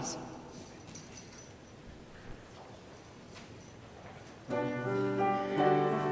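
A congregation getting to its feet in a large, echoing church, with faint shuffling and a few soft knocks. About four and a half seconds in, a keyboard starts the hymn's introduction with sustained chords.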